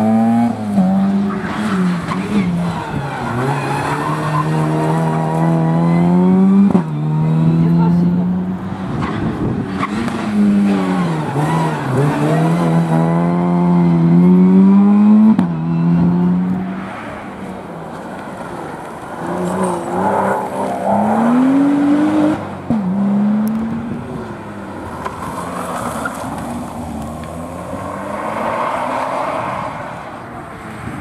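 Rally car engines at full throttle: a VW Golf II accelerates away hard, its engine note climbing through the revs and dropping back at each gear change. About two-thirds of the way through, a quieter Opel Adam rally car revs up and pulls away.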